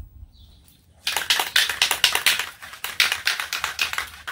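Aerosol can of spray polyurethane being shaken, its mixing ball rattling in quick clicks starting about a second in.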